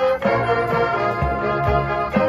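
Marching band playing a sustained chord, with an organ-like keyboard sound from the front ensemble and two low hits a little past the middle.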